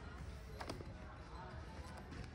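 Faint handling of a hardbound paper planner as its pages are turned, with a couple of soft taps about half a second in.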